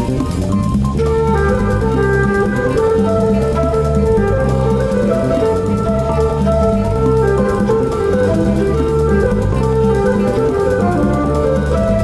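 Instrumental passage of a swing jazz song with no singing: a bass line stepping from note to note under held higher melody notes.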